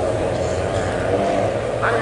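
Renault Clio rallycross cars' engines running steadily in the distance, with a voice talking over them.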